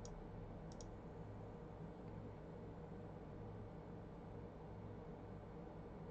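Two quick double clicks of a computer mouse in the first second, under a faint steady low hum.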